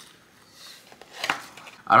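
A person biting into and chewing a breaded chicken sandwich, a McDonald's Chicken Big Mac: faint chewing with a short crisp crunch a little past the middle.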